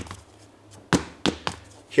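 A foam-filled power-wheelchair tire dropped on a concrete floor: one thud about a second in, then two smaller bounces close after. It sounds more like a tire, because the foam insert shifts around inside the casing.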